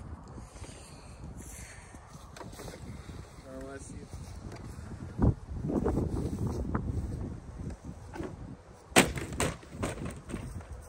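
A plastic Bissell upright vacuum cleaner being smashed: a sharp crack about halfway through and a couple of seconds of knocking and clattering, then the loudest crash near the end as the vacuum body lands on the ground, followed by two smaller knocks. Wind rumbles on the microphone throughout.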